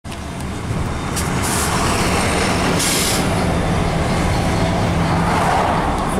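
Freight train passing close by: a Florida East Coast GP40-2 diesel locomotive running past, then Conrail hopper cars rolling over the rails. There are two brief hisses in the first half.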